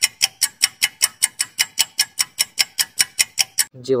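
Countdown-timer clock-ticking sound effect: rapid, even ticks, about six a second, stopping just before the end.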